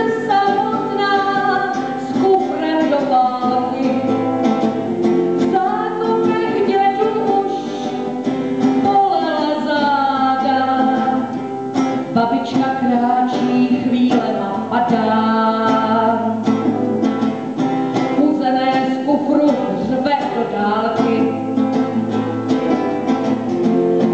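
A woman singing to her own acoustic guitar, which she strums in a steady accompaniment while her voice rises and falls through the melody.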